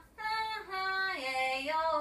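A woman singing a slow, unaccompanied melody in held notes that step downward.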